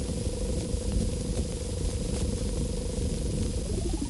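Synthetic soundtrack music drawn directly onto the film's optical track: a steady, pulsing buzz-like tone held over the hiss and rumble of an old film print. Near the end it splits into two tones, one gliding up and one gliding down.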